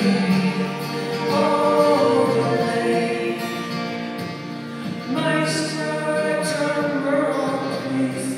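Live folk-pop song: a man and a woman singing together over a strummed acoustic guitar, with long held notes ringing out in a large, reverberant hall.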